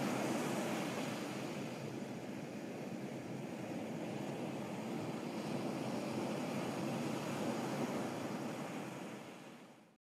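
A steady rushing noise with no distinct tones or events, fading out near the end.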